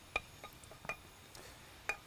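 Three light clinks of kitchen utensils against dishes, about a second apart, with a few fainter ticks between.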